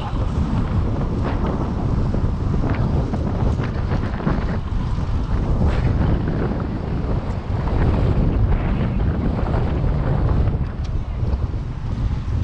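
Wind buffeting an action camera's microphone on a moving bicycle: a steady, loud, low rumble.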